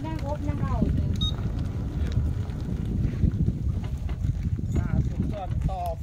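Steady low wind rumble on the microphone from riding an open canopied motorcycle, with a man's voice briefly in the first second and again near the end.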